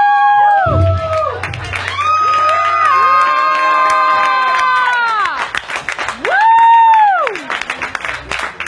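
Club audience cheering after a live rock set: several long, high shouts that rise, hold and fall, overlapping one another, with a low hum under them for a couple of seconds. Clapping starts near the end.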